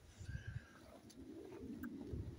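A pigeon cooing faintly, one low drawn-out call in the second half, after a few soft low thumps.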